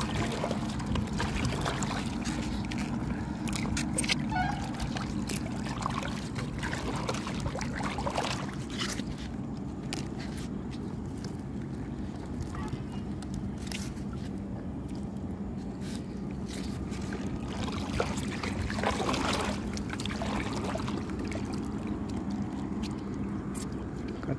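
Water sloshing and dripping as a fishing net is hauled in by hand over the side of a small craft, with scattered knocks and rustles of net and fish being handled. A steady low hum runs underneath.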